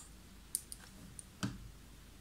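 Small clicks of makeup items being handled: three quick light clicks, then a louder tap about one and a half seconds in.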